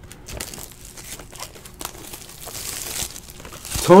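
Foil wrapper of a Panini Absolute Memorabilia basketball card pack crinkling as it is torn open by hand, growing louder from about halfway in. A word of speech comes in at the very end.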